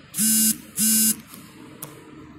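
Two short, loud buzzing beeps, each about a third of a second long and a fraction of a second apart, with a steady pitch.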